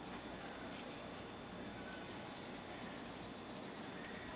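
Salt being sprinkled by hand over raw rainbow trout, a few faint, soft high patters in the first second, over a low steady room hiss.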